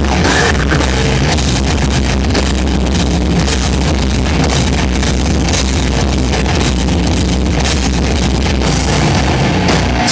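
A hardcore band playing live: loud distorted electric guitars, bass and a pounding drum kit in one dense, continuous wall of sound with heavy low end.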